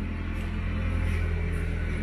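A steady low machine hum with a haze of noise over it, even throughout.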